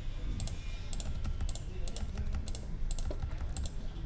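Typing on a computer keyboard: short key clicks in quick, irregular runs, over a low steady hum.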